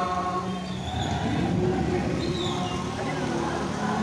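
Street noise heard from a moving bicycle: a steady rumble of motor-scooter traffic mixed with indistinct voices.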